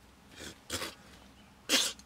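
A person making three short, breathy throat sounds, like coughs, the last one the loudest.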